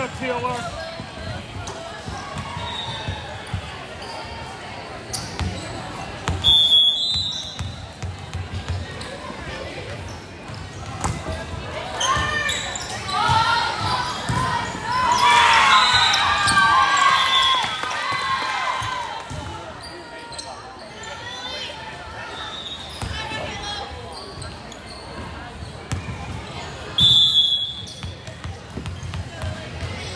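A volleyball rally in an echoing gym: a referee's whistle blows briefly about seven seconds in, ball hits and bounces sound over the chatter, and a burst of shouting and cheering goes up around the middle as the point is won. Another short whistle blows near the end.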